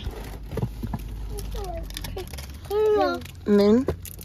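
Short bursts of speech and murmured vocal sounds, with two clearer utterances about three seconds in, over a low steady hum in a car cabin.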